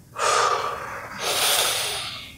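A man breathing out fully and then taking a deep breath in, heard as two long breath sounds, the second a brighter hiss. These are the deliberate deep breaths of a chest expansion check.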